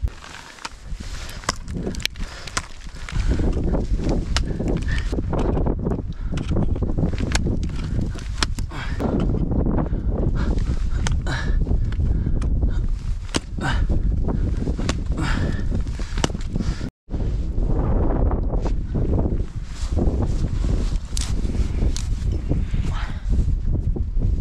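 Ice axe picks striking and chipping into water ice and crampons kicking in, a steady run of sharp irregular impacts as the climber works upward, over low wind rumble on the microphone.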